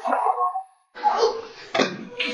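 A man crying out and groaning in pain from a blow: short yelping cries, then a pause. A sharp knock comes near the end.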